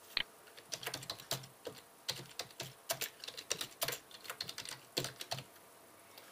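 A single click, then a quick, uneven run of computer keyboard keystrokes as a name is typed into a text box; the keystrokes stop shortly before the end.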